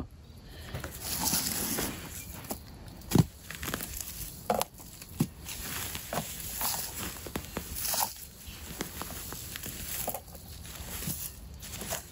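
Hands digging and rummaging through loose soil in a plastic barrel: a continuous gritty scraping and crumbling, with a few brief sharper knocks.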